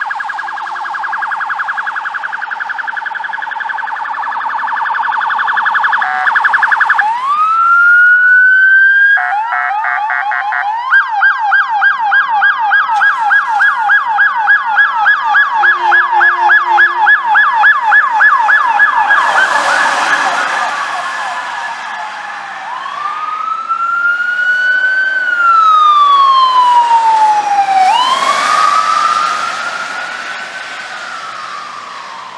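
Electronic emergency sirens of a police SUV and an ambulance responding. First a very fast warble, then a rising wail, then a long run of quick yelping sweeps with a second siren overlapping. Near the end come slow wails that rise and fall.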